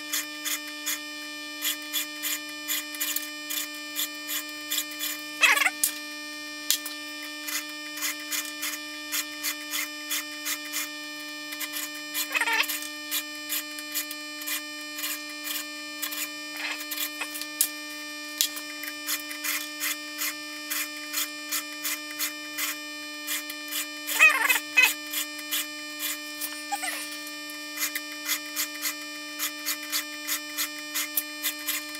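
Stihl 2-in-1 Easy File being stroked over a 3/8-pitch saw chain clamped in a vise, rasping about twice a second in runs of strokes on each tooth, with short pauses and a few louder scrapes between teeth. A steady hum runs underneath.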